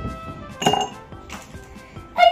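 A felt-tip sketch pen dropping into a glass pitcher: a sharp clink with a short glassy ring about two-thirds of a second in, then a fainter knock as it settles.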